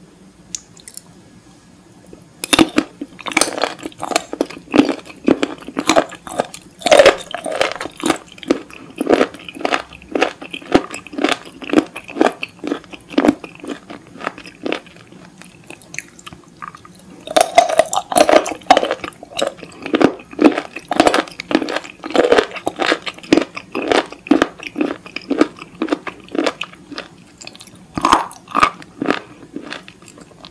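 Close-miked chewing of a sauce-dipped bite of raw seafood: rapid crunchy, wet bites and chews. The chewing comes in two long runs with a short pause in the middle.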